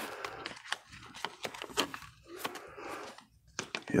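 Clear plastic binder pocket pages crinkling and rustling, with irregular light clicks, as trading cards are slid into the sleeves; the handling pauses briefly near the end.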